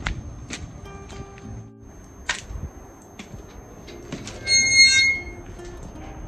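Metal security-grille gate being handled: a few knocks and clicks, then a short squeal of its hinges about four and a half seconds in. Soft background music plays throughout.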